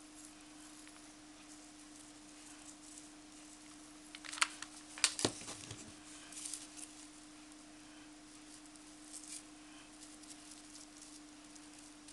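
Jute twine being handled and pressed along the edge of a cardboard frame, with faint rustling and two sharp clicks a little over four and five seconds in, over a steady low hum.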